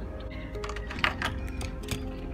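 A few small sharp clicks and taps of die-cast Hot Wheels toy trucks being handled and set down side by side, the loudest just after a second in, over background music.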